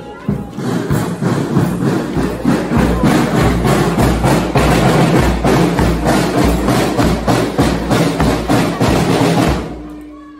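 Scout drum band of snare drums and a bass drum playing a steady marching beat. It stops just before the end.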